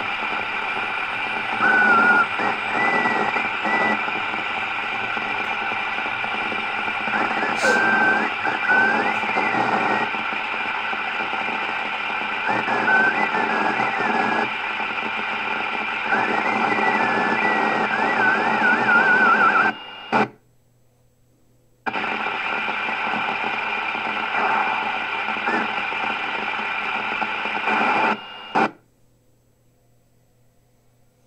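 K-PO DX 5000 CB radio's speaker playing a noisy incoming FM transmission: voices and wavering tones over heavy hiss. The signal drops out about twenty seconds in, returns two seconds later, and cuts off near the end after a short burst.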